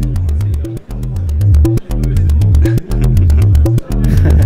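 Joranalogue Delay 1 bucket-brigade delay module played as a Karplus-Strong plucked-string voice, sounding a repeating sequence of low plucked notes from a step sequencer. The signal is heavily saturated: it is overloading the recording input.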